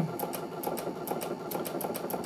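Brother NQ3700D/NV2700 computerised sewing machine running at its top speed while sewing a wide sideways decorative wave stitch. The needle strokes make a fast, even ticking.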